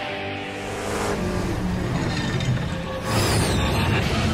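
Tense orchestral cartoon score with held tones, joined about three seconds in by a sudden loud rushing sound effect.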